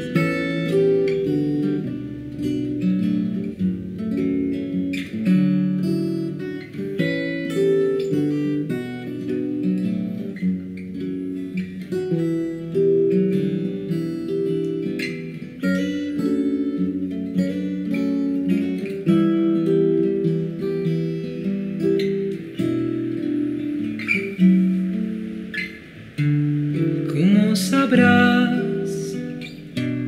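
Acoustic guitar music: a run of picked notes and chords that carries on without a break.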